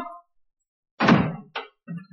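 A wooden door thunking shut about a second in, followed by a fainter click.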